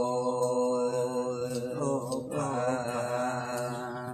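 Red Dao folk singing in the Pả Dung style: a single voice holds long, wavering notes in two drawn-out phrases, with a short break about two seconds in.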